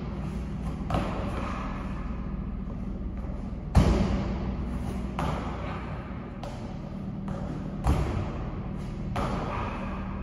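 Thuds of feet landing on a plyo box and the gym floor during box jumps: two heavy landings about four seconds apart, the first about four seconds in, with lighter thumps between them. A steady low hum runs underneath.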